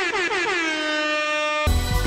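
DJ air-horn sound effect: a quick run of short blasts, each dropping in pitch, then one long held blast. Music with drums cuts in near the end.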